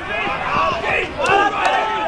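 Several men shouting at once on an Australian rules football ground, footballers calling out for the ball during play, with two short sharp knocks a little past the middle.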